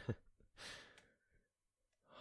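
A man's soft, close-miked 'huh' followed about half a second later by a breathy sigh.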